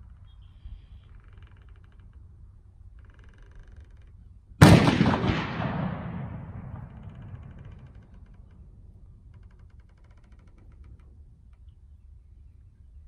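A single rifle shot about four and a half seconds in, sharp and loud, with a long echo trailing off over about two seconds.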